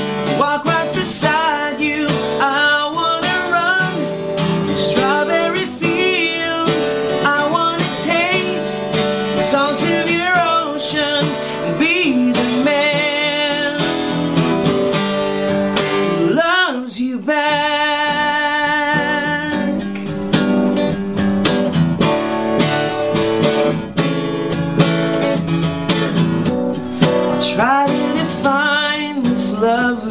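Gibson steel-string acoustic guitar strummed steadily under a man's singing voice, which holds long notes with vibrato in the middle of the passage.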